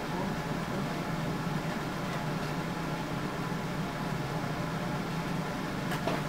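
Steady room tone in a small classroom: a low, even hum with hiss, of the kind made by ventilation or air conditioning.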